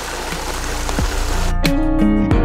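Steady hiss of rain, with low music tones under it, cut off about one and a half seconds in as music with plucked guitar-like notes comes in.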